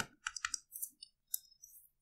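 A few faint, light clicks: stylus taps on a drawing tablet putting down the three dots of a therefore sign.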